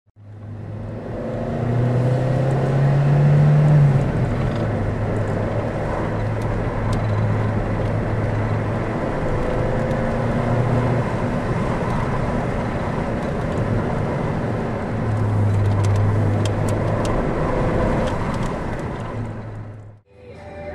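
Car engine and tyre noise heard from inside the cabin while driving. The engine note climbs between about two and four seconds in, then drops back and holds steady. The sound fades in at the start and fades out at the end.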